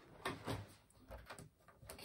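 Faint handling noise: a few light knocks and rustles of packaging being moved about by hand.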